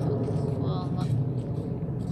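A steady low rumble of outdoor background noise, with a short high, voice-like sound between about half a second and a second in.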